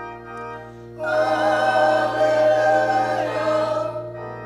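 Mixed church choir singing, quietly at first, then louder on sustained notes from about a second in, easing off just before the end.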